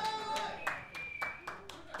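Hand claps, about four a second, following the end of a rising voice near the start.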